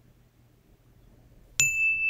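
Near silence, then about one and a half seconds in a single bright ding sound effect strikes and rings on steadily. It is the chime that marks the reveal of a quiz answer.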